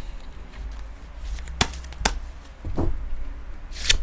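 Tarot cards being handled: a few sharp clicks and taps as a card is drawn from the deck, then a short swish near the end as the card is laid down on the table.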